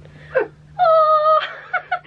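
A woman's brief wordless vocal sound: one high held note lasting about half a second, not a word.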